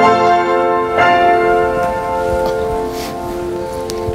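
Piano music ending: a chord struck about a second in rings on and slowly fades.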